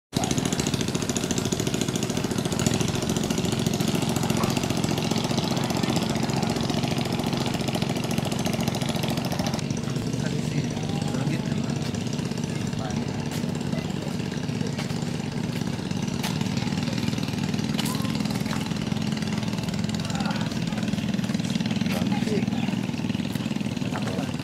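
An engine running steadily with a rapid, even pulse, under indistinct voices. A high hiss over it drops away about ten seconds in.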